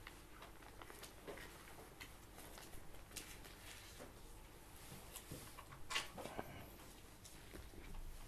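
Faint rustling and small knocks from a congregation turning Bible pages to find the psalm, with one more distinct knock about six seconds in.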